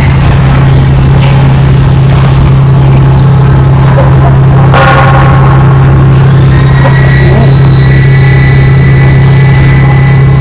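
Loud, steady low mechanical drone under a rushing noise, with a brief swell in the noise about five seconds in.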